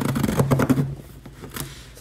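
A mailed package being handled and moved about: a loud burst of rustling and knocking in the first second, then quieter rustling.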